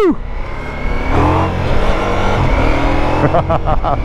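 Ducati Multistrada V4 S's 1158 cc V4 engine accelerating hard from walking pace on a wet road, shifting up from first to third gear as speed climbs, heard with wind on the bike-mounted microphone.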